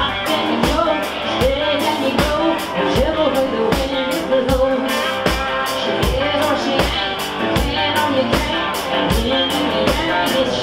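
Live country-rock band playing electric guitars over bass and a drum kit, with a steady kick-drum beat and cymbals. A voice calls "yeah" near the end.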